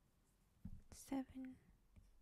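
A woman's soft whispered voice: a sharp breathy hiss about a second in, then two short, low murmured sounds. A few soft taps of a stylus on a tablet screen come just before.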